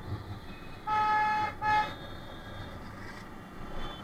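A vehicle horn honks twice in traffic, a steady beep of about half a second followed at once by a short one, over steady road noise.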